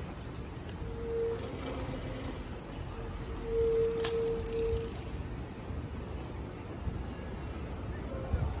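Bicycle brakes squealing in a steady high tone, briefly about a second in and again for nearly two seconds around the middle, over low street noise.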